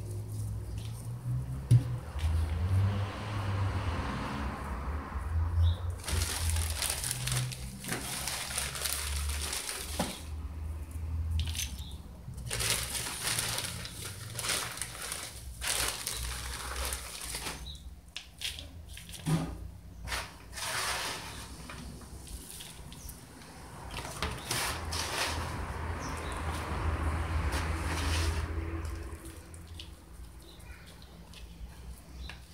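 Rustling and crinkling of a clear plastic bag and of potting mix being handled and pressed into a pot, coming in uneven bursts over a steady low rumble.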